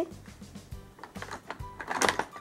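Pencils being taken from a plastic pencil box and set down on a tabletop one at a time: a few light clicks and knocks.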